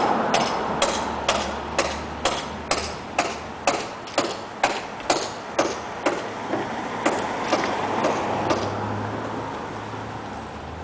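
Hammer blows on a roof under repair, a steady rhythm of about two strikes a second that grows fainter and stops shortly before the end.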